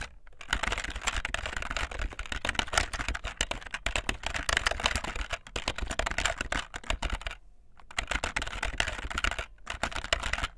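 Fast typing on a membrane keyboard: a dense, continuous run of key presses, broken by a short pause just after the start and another about seven and a half seconds in.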